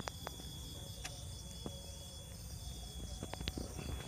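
Quiet outdoor background with a steady high insect trill, like crickets, and a few faint short clicks scattered through it.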